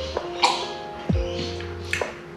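Background music with plucked string notes over a low beat.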